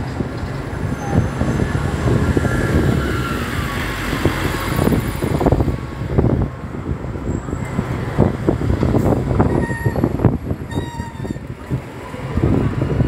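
Double-decker buses running past in street traffic, a steady low diesel engine rumble with passing-vehicle noise.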